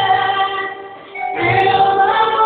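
Song with choir singing in long held notes; the sound dips about a second in and a new sung phrase starts shortly after.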